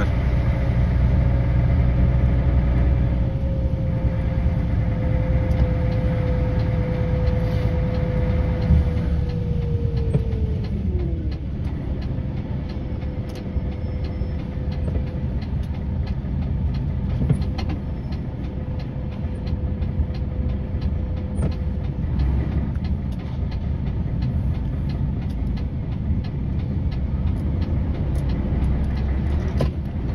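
Concrete mixer truck's diesel engine running as the truck drives slowly, heard from inside the cab as a steady low hum. A steady whine in the sound glides down in pitch about ten seconds in.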